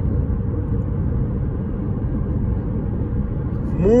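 Steady low rumble inside the cabin of a 2020 Jeep Compass 2.0 Flex cruising at about 86 km/h, mostly its tyres running on the road surface.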